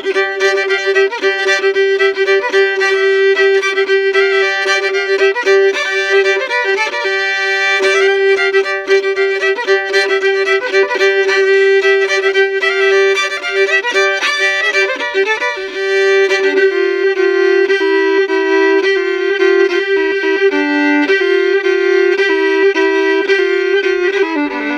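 Solo fiddle playing an old-time fiddle tune, bowed, with a steady drone note sounding under the melody throughout. The double-stopped lower notes change about two-thirds of the way in.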